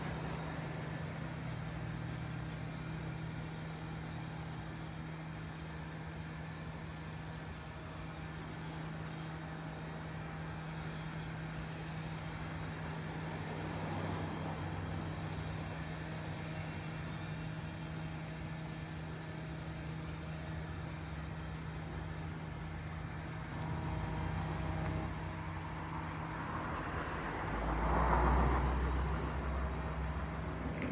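Urban road-traffic ambience: a steady low hum under continuous distant traffic noise, with a vehicle passing by, loudest near the end.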